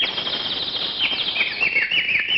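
Birds chirping, with a run of quick falling chirps about a second in, over a steady hiss.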